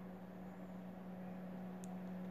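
A steady low hum under faint hiss, with one tiny high tick near the end; no hammer taps are heard.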